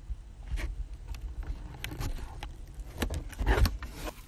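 Handling noise from a handheld phone camera: a low rumble with scattered clicks and knocks, and a louder scuffle about three and a half seconds in.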